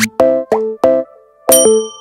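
A short musical jingle of separate, clipped notes, three in quick succession, a brief pause, then a bright ringing chime about halfway through.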